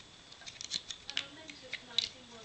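Small plastic clicks and taps from a Transformers Henkei Cyclonus action figure as its arms are pulled out and its joints are moved, a scatter of faint, irregular clicks.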